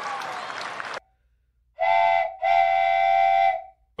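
A steady whistle-like tone sounds twice at the same pitch, first a short note and then a longer one, after a sudden cut to silence.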